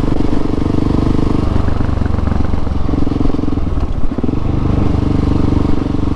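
Husqvarna 701's single-cylinder engine running under way at a steady cruise, over a steady hiss of rushing air. About four seconds in the engine note dips briefly, then picks up again.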